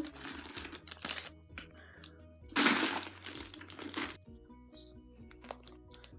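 Plastic candy wrappers crinkling in two bursts; the second, about two and a half seconds in, is the louder. Background music plays throughout.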